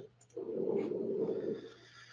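A person's drawn-out wordless vocal sound, about a second long, over a low steady hum in the call audio.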